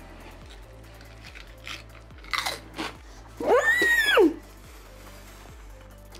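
Crunching and chewing of a potato chip: a few crisp crunches, then a short pitched vocal sound that rises and falls about three and a half seconds in, the loudest thing heard.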